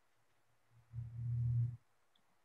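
Faint room tone over a video-call line, broken about a second in by a short, steady low hum lasting under a second.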